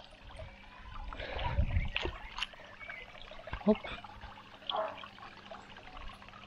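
Shallow pond water trickling and sloshing as a hand moves through it, with a few small splashes and irregular soft knocks.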